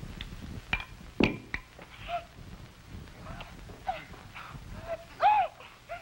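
A few clinks and a thud as a ceramic bowl and tableware are set down on a table, then a short high-pitched cry from a woman near the end.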